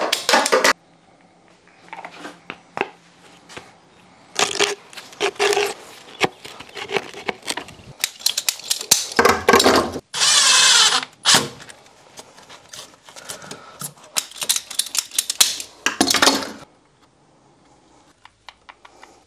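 Knocks, taps and clicks of PVC conduit, fittings and hand tools being handled and fitted, with a cordless drill driver running once for about a second and a half near the middle, driving a screw into a conduit clip on a block wall.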